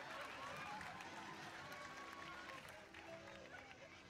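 Studio audience voices over soft music with held notes. The crowd sound thins out about three seconds in.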